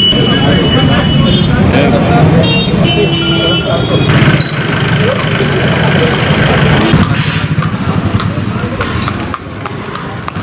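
Busy street noise: traffic running and people talking in the background, with short vehicle-horn toots near the start and again about three seconds in.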